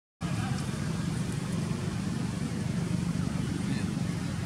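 Steady outdoor background of a low murmur of distant voices over a hum of vehicle traffic, after a split-second dropout right at the start.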